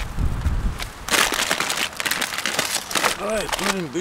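Plastic grocery bags and food packaging crinkling and rustling as shopping is handled, in quick crackly bursts, after a brief low rumble at the start. A voice comes in near the end.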